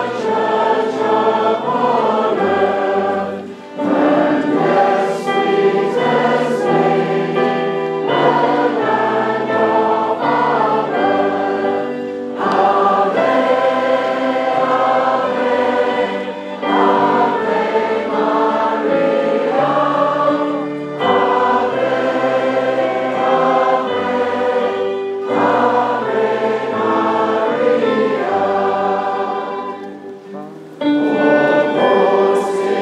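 A choir singing a hymn in phrases, with short breaks between the lines.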